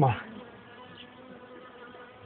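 Honeybees buzzing around an open hive, a steady hum.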